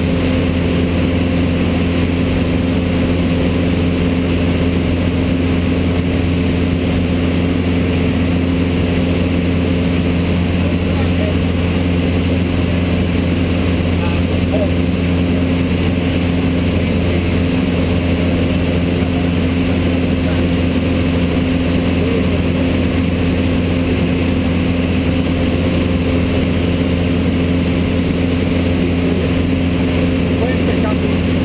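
Single-engine light aircraft's piston engine and propeller droning steadily in flight, heard inside the cabin.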